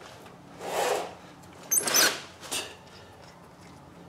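Nuts being worked off the transfer-case studs with a hand wrench under a Jeep: two short rasping rubs of metal, the second opening with a brief high squeak, then a fainter third scrape.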